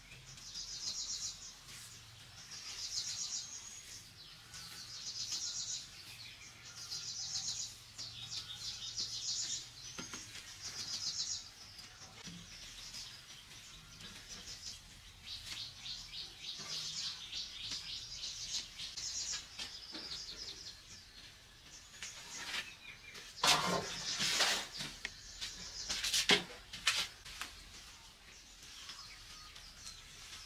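A bird singing short, high, trilled phrases about a second long, roughly one every two seconds, and later more continuously. Near the two-thirds mark a few sharp knocks stand out as the loudest sounds.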